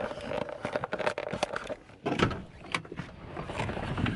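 Irregular clicks, knocks and rubbing as a man climbs out of a pickup truck's cab, the handheld camera jostled as he moves, with a faint steady tone during the first second or so.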